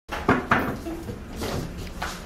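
Two sharp knocks in quick succession, about a quarter and half a second in, followed by quieter, indistinct handling and background sounds.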